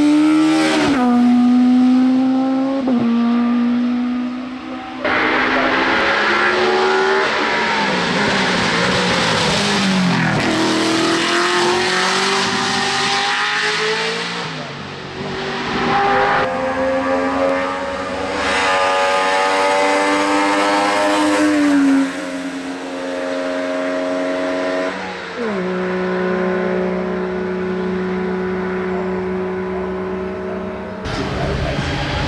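Race car engines at hard throttle on a hillclimb, several cars in turn, each engine's pitch climbing and dropping again and again. The sound changes abruptly a few times as one car's run gives way to the next.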